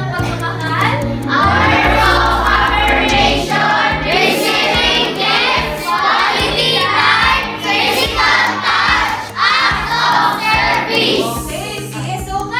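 A group of children singing together over recorded backing music.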